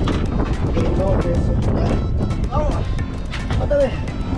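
Background music over a steady low rumble of wind and boat noise, with a few brief indistinct shouts from the crew.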